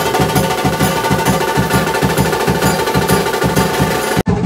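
Live Maharashtrian banjo-party band: saxophones, trumpets and clarinet playing held melody notes over loud, fast, dense drumming.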